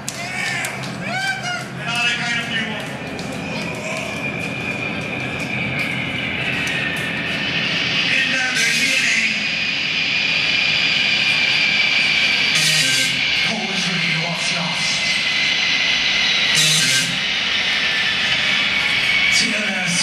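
Live ambient music: warbling, gliding tones at first, then a sustained high drone that slowly grows louder, with swells of hiss every few seconds.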